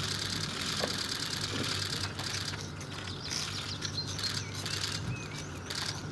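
Songbirds chirping and singing, with short whistled notes that rise and fall in the second half, over steady outdoor background noise.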